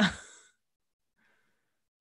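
A person's short breathy sigh at the start, falling in pitch and fading out within about half a second.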